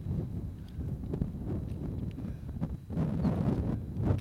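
Wind buffeting a camera microphone, a low uneven rumble, with a few faint knocks.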